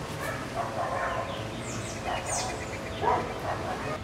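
A dog barking a few short times in the distance, with birds chirping.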